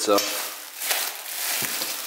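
Plastic wrapping and a cardboard box rustling and crinkling as a new exhaust header is lifted and handled in its packaging, with a few sharper crackles.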